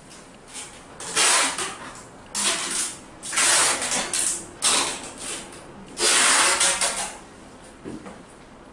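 Five loud bursts of rattling, rustling noise, each half a second to a second long, with quiet between them.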